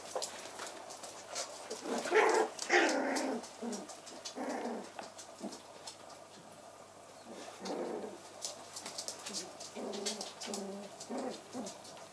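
Shetland sheepdog puppies vocalising in several short calls, a cluster about two seconds in, more near the middle and again near the end, with claws clicking and pattering on a wooden floor.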